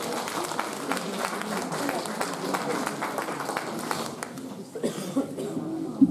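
Audience applauding, a dense patter of many hands clapping mixed with murmuring voices, fading out about four and a half seconds in.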